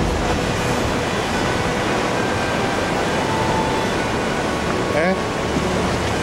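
Heavy sea surf breaking and washing over rocks below the cliffs, a steady loud rushing noise. About five seconds in, a short rising cry sounds over it.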